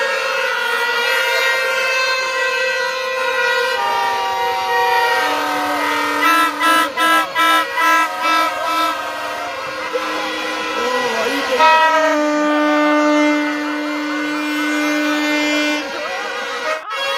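Music of long, held reedy wind-instrument notes with several pitches sounding at once, changing every few seconds, with a run of short repeated notes, about two or three a second, in the middle.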